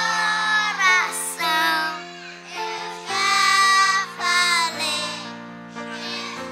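A group of children singing a Portuguese worship song together, loudly, over an instrument holding sustained chords.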